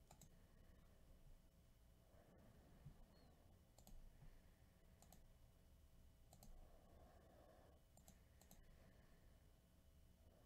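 Near silence: room tone with a few faint, scattered clicks at irregular intervals.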